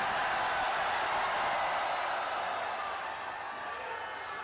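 Rally audience applauding, a steady clatter of many hands that slowly dies down toward the end.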